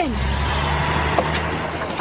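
A motor vehicle sound effect for a small cartoon dumper truck: a steady low engine hum with a hiss over it as the truck moves, and one small click about a second in.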